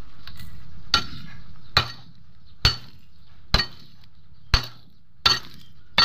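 A steel hoe blade striking and prying among stones in rocky ground: about seven sharp metallic clinks, roughly one a second, some doubled.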